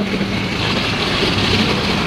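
Steady rushing noise with a faint low hum underneath, holding at an even level throughout.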